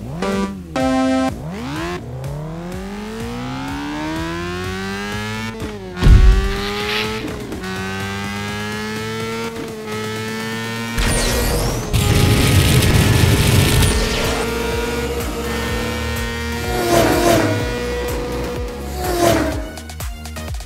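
Cartoon race car engine sound effects: a countdown beep, then engines revving up with rising pitch and running on steadily. There is a loud thump about six seconds in, and a loud rushing noise about eleven to fourteen seconds in.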